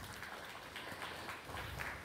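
Faint, light applause from a small group of people clapping.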